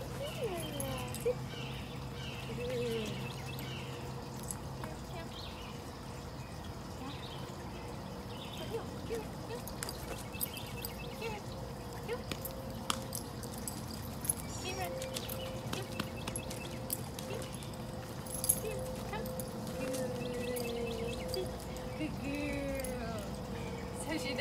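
A woman's voice giving short, quiet commands to a husky puppy, with scattered light clicks and a faint steady tone in the background.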